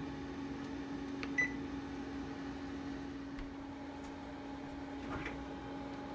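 GE electric wall oven running with a steady low hum. Its control panel gives one short, high electronic beep about one and a half seconds in as the bake timer is set.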